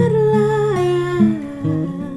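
A woman's voice holds one long wordless note that glides slowly downward in pitch, over acoustic guitar accompaniment.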